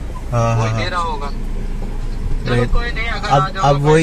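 Men's voices in a phone conversation inside a car cabin, with a short pause in the middle, over a steady low hum from the car.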